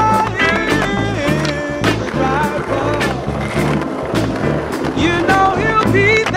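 Skateboard wheels rolling on stone pavement, with the board popped and landed in a flip trick, under a song with singing and a steady drum beat.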